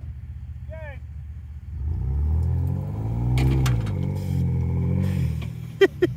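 Off-road vehicle engines revving under load for about three and a half seconds, rising and then easing off, as a Ford Bronco pulls a Ford Explorer Sport Trac stuck in sand out on a tow strap.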